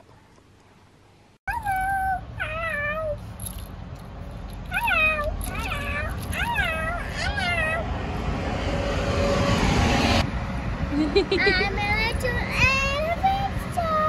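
A young child's high voice making a string of short, drawn-out rising-and-falling vocal sounds over steady street traffic noise, starting suddenly about a second and a half in.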